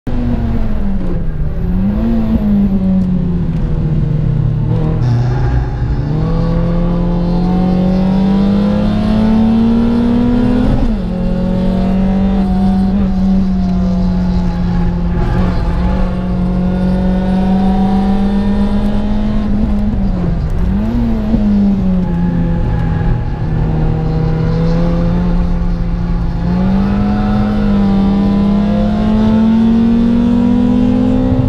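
Citroën Saxo Cup track car's engine heard from inside the cabin while being driven hard, its revs climbing, holding and dropping sharply a few times, with constant road and tyre rumble underneath.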